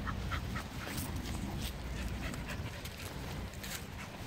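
Dogs play-fighting on grass, with short dog vocalisations scattered through, over a steady low rumble.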